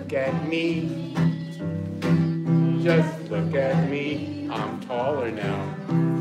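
Acoustic guitar strummed in chords about twice a second, with a voice singing along in places.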